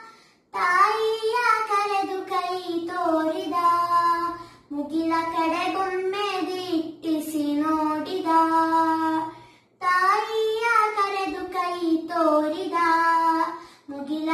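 A young girl singing a song solo, one clear voice holding and bending long notes, in phrases broken by short breathing pauses every four to five seconds.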